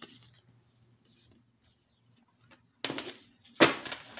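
Near silence, then about three seconds in two short papery flaps of cards being handled, the second one louder and sharper.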